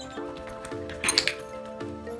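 Background music plays throughout, with a quick cluster of metallic clinks about a second in as a dog noses at a tap-style service bell on the floor.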